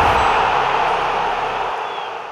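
Static-like hiss from a logo intro sound effect, a noisy swell that fades out steadily.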